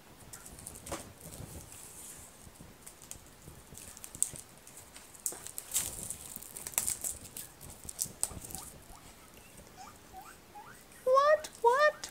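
Clear plastic wrapping on a sketchbook crinkling in scattered small crackles. Near the end, guinea pigs break into wheeking, a run of loud rising squeals, begging for food because they take the rustle of plastic for a bag of vegetables.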